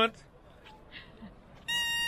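After a quiet stretch, a small handheld rooster call toy is blown and sounds a steady, high, buzzy note about two-thirds of the way in.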